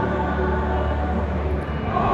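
Choir singing a long held chord that breaks off shortly before the end.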